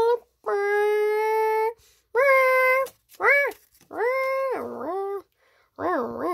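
A child's voice singing a short wordless tune of about five notes: two long steady notes, a short one, one that drops in pitch, then a wavering up-and-down note near the end.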